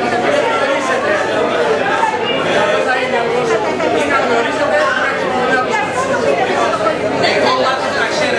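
Several people talking at once, their voices overlapping in a crosstalk argument, with no single speaker standing out.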